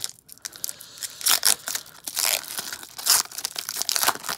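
Foil wrapper of a hockey card pack being torn open and crinkled by hand: irregular crackling tears, loudest in several bursts through the middle.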